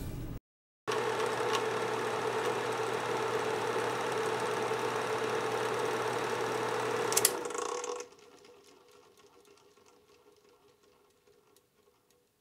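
Film projector running with a steady mechanical whirr and hum, then switched off with a sharp click about seven seconds in and quickly winding down to a faint fading tone.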